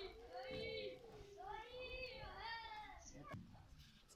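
Faint high-pitched voice in the background, calling or speaking in drawn-out phrases that rise and fall, fading out near the end.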